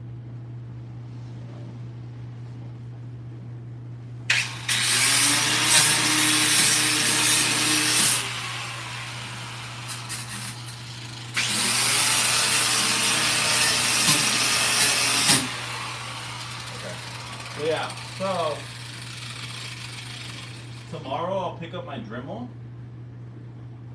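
Cordless angle grinder with an abrasive disc grinding at the Mustang's rear bumper cut-out, run in two bursts of about four seconds each, a few seconds apart. It is taking off a lot of material quickly.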